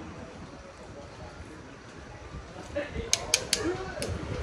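Quiet workshop background, then three quick sharp clicks about three seconds in, from wire-stripping pliers and wiring being worked at a motorcycle's headlight connector.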